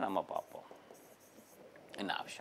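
Faint scratching of a stylus writing a word on the glass face of an interactive touchscreen board.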